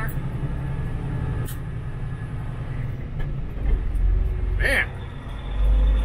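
Steady low drone of a semi-truck tractor running bobtail at freeway speed, heard inside the cab. Heavier low rumbles come in the last two seconds, with a brief voice sound near the end.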